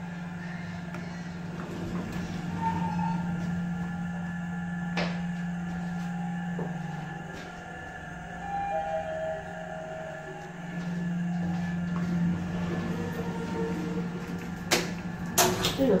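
Mitsubishi GPS-III traction elevator car travelling between floors: a steady low hum that eases off briefly about halfway through, with a few sharp clicks near the end.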